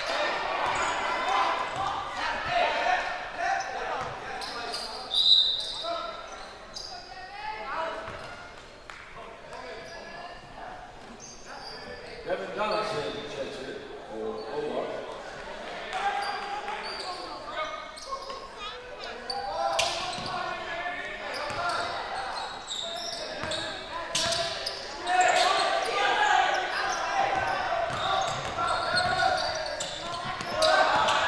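Basketball game in a gym: the ball bouncing on the hardwood court, with scattered sharp knocks, under indistinct voices of players and spectators echoing in the large hall.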